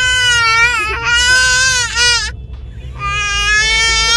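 A baby calling out in long, loud, drawn-out vocal cries, each held for a second or more, with a short break a little past halfway.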